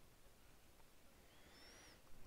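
Near silence: faint room tone, with a couple of faint high-pitched rising whistles near the end.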